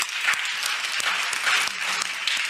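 An audience applauding: dense, steady clapping.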